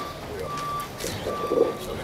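An electronic beeper repeating one steady tone at an even pace, a short beep a little more than once a second. A brief louder sound comes about one and a half seconds in.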